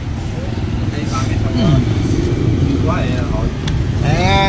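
Steady low rumble of street traffic, with faint voices over it and a single click near the end.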